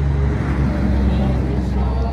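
Congregation singing a hymn without accompaniment, held notes under a steady low rumble, with a rushing noise that swells about a second in and fades again.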